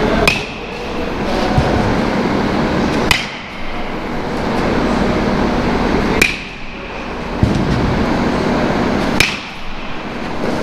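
Louisville Slugger Select PWR BBCOR bat hitting pitched baseballs four times, about three seconds apart: each contact is a sharp crack with a short metallic ping.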